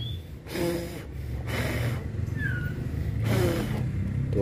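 A person blowing three short puffs of air onto a hand-held white-rumped shama fledgling, parting its breast feathers to see whether the chest is still full, a check for a thin, sickly bird. A brief, high falling chirp comes about midway.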